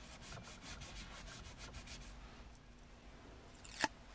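Alcohol wipe rubbing quickly back and forth on a hard plastic car console panel, a faint scrubbing for about two seconds that then dies away. A single short, sharp click comes just before the end.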